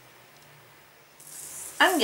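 Faint room tone with a low steady hum. A little past a second in, a soft hiss starts, and a woman begins speaking just before the end.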